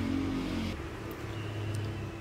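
A steady low hum with a faint hiss, and a thin faint high tone entering about a second in.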